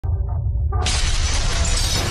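Intro sound effect of something shattering over a deep rumble. The bright crashing noise bursts in sharply about three-quarters of a second in and keeps going.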